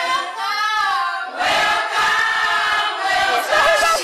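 A choir singing with held notes, the sound growing fuller a little over a second in.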